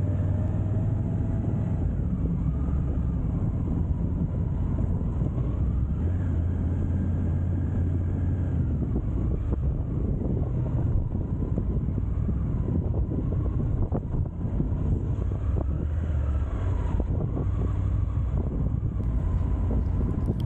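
Triumph Tiger 850 Sport's three-cylinder engine running at low speed as the motorcycle rolls slowly, a steady low drone that swells and eases with the throttle.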